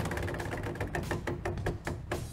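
Game-show prize wheel spinning, its pegs flicking past the pointer in a rapid run of clicks that gradually slows as the wheel loses speed.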